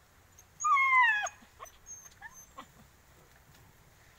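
Dog whining: one loud whine about half a second in, falling in pitch, then a few short, fainter whimpers.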